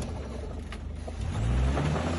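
Land Rover Discovery's engine idling low just after ramming a caravan, its pitch climbing a little as it revs up about a second and a half in.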